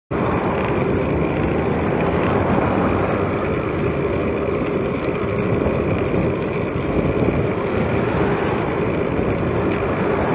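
Steady wind and road noise on a moving vehicle-mounted camera, rumbling and even.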